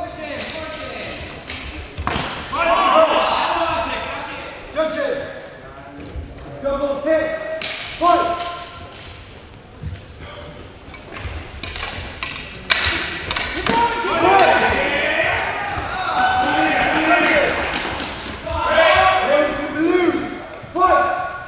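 Sword-and-buckler fencing: a few sharp knocks and clashes of swords and bucklers, spread through the bout, under the voices of people around a large, echoing sports hall.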